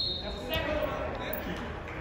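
Scattered voices of people calling out across a gym hall, with a few short thuds.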